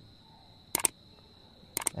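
Two short double clicks about a second apart, a finger tapping on a smartphone's touchscreen, against near-quiet room tone.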